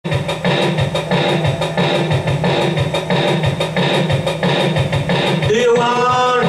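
Rock music with a steady beat, bass and guitar; a voice comes in singing near the end.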